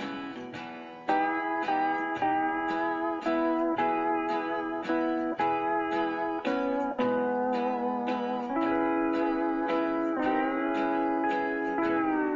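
Instrumental break of a country backing track: a steel guitar playing long, sliding melody notes over a plucked guitar keeping a steady beat of about two strokes a second, coming in about a second in.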